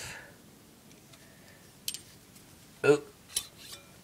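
Two sharp metallic clicks about a second and a half apart as a replica World War One trench knife with a knuckle-guard grip is handled, with faint scraping and a short ring near the end.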